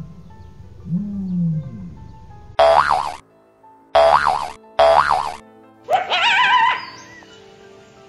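Cartoon sound effects over light background music. First come low swooping boing-like glides, then three short loud bursts, then a wavering rising whistle-like tone about six seconds in.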